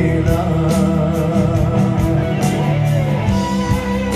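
A man singing a Malay pop song into a microphone over amplified backing music with guitar and a steady drum beat.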